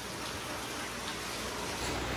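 Steady rush of running aquarium water over a low hum.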